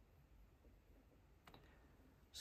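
Near silence: room tone, with one faint, short click about one and a half seconds in.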